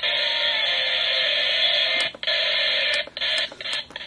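Static hiss from a Lalaloopsy toy alarm clock radio's small, tinny speaker while it is tuned between stations, with a sharp click about two seconds in. The hiss breaks up into short bursts in the last second.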